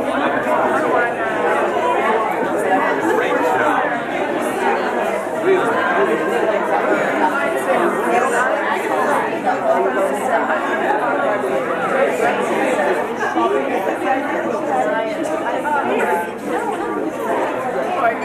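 Indistinct chatter of many people talking at once, a steady hubbub of overlapping voices with no single speaker standing out.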